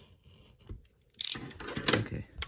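A hard plastic card storage cube is being pried open by hand. About a second in there is a loud plastic crack, then scraping and a sharp click near the end, a crack that made it seem something had broken.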